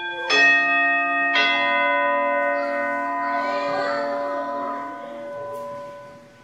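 Altar bells struck twice, about a third of a second in and again just over a second in, at the elevation of the host. Each strike rings on with several sustained tones that slowly fade away over the next few seconds.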